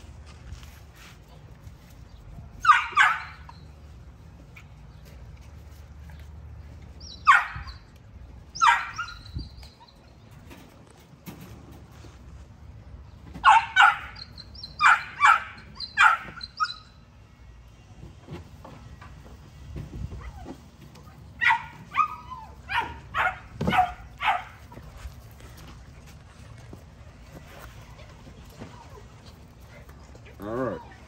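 XL American Bully puppies barking with short, high yips in bursts: a couple at first, two more a few seconds later, then a run of four and, later, a quicker run of about six.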